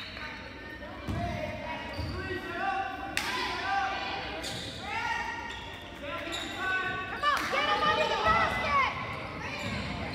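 Basketball bouncing a few times on a hardwood gym floor, with players and spectators calling out and echoing in the gym, the voices strongest near the end.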